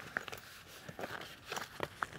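Faint, scattered clicks and rustles of hands on the swag's 420 gsm ripstop canvas door and its zipper pull, just before the zip is run open.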